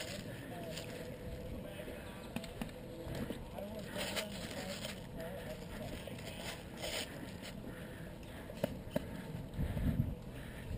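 Footsteps through grass and the rustle and knock of gear as a player walks, with a few crisp rustles about four and seven seconds in and some thumps near the end. Indistinct voices sound faintly in the background.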